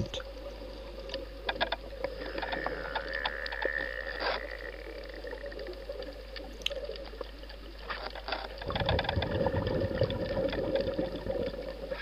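Underwater sound picked up through a dive camera's housing: a steady hum with a higher tone for a few seconds near the start, scattered sharp clicks, and from about three-quarters of the way through a louder low rush of a scuba diver's exhaled bubbles.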